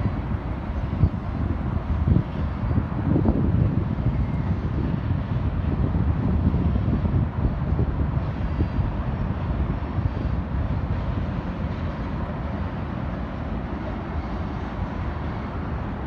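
Wind buffeting the microphone over the distant rumble of a freight train running on the line below, a steady low noise with no horn.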